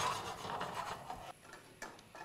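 Frying pan being shaken on a gas hob, the filled pasta sliding in the bubbling butter sauce. The sound dies away after about a second, followed by a couple of light clicks near the end.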